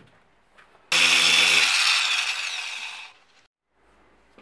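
A small handheld power tool working the edge of a 3D-printed plastic part. It starts abruptly about a second in with a steady whine and a hiss, then fades and stops after about two seconds.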